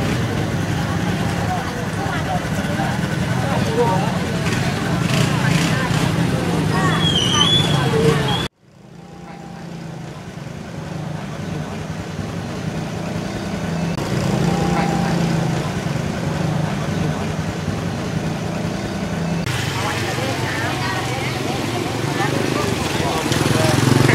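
Busy street sound: people talking in the background over the steady hum of a running motor vehicle engine. The sound cuts out abruptly about eight seconds in, then fades back up.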